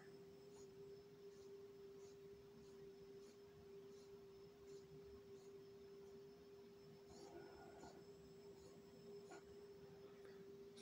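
Faint, steady whine of a small 1000 kV brushless outrunner motor spinning slowly under its electronic speed controller, holding one pitch, with faint ticks about twice a second.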